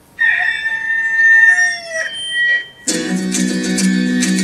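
A rooster crowing once, a long held call from a film soundtrack played over the hall's speakers. About three seconds in, guitar-led music starts.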